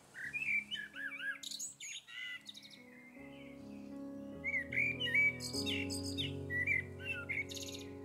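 Birds chirping in quick, swooping calls. Soft music with held notes comes in about three seconds in and grows louder under the birdsong.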